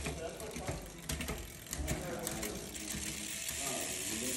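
Mountain bike rear drivetrain turning in a stand, with the 12-speed Ictus Evolve cassette, chain and rear derailleur making rapid ratcheting clicks, settling into a steadier whir about halfway through.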